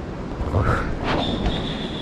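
Footsteps and rustling of leaves and branches as someone pushes through dense jungle undergrowth, with a steady high-pitched call starting about a second in.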